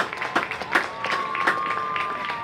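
Marching band playing: sharp percussion hits, then a high held note from the winds coming in a little under a second in.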